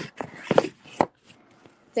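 A run of short, irregular knocks and taps, roughly two a second, with handling noise as the phone is moved about.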